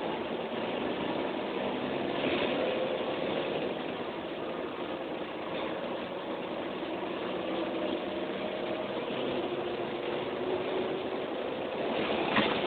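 Mercedes-Benz O405N bus's diesel engine running, heard from inside the passenger saloon with the cabin's rumble and rattle, its note drifting slightly up and down.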